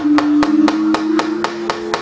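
The dalang's wooden cempala knocking rapidly and evenly on the wooden puppet chest, about seven knocks a second, over soft sustained gamelan tones.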